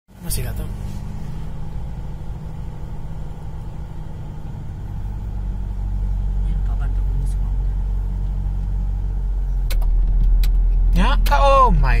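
Engine and road noise inside a moving car's cabin: a steady low rumble that grows louder over the last couple of seconds.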